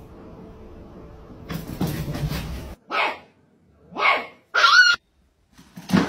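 A dog barking in a few short barks about a second apart, the last a higher, yelping bark.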